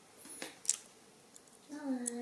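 A few short, sharp clicks in the first second, then a woman says one word near the end.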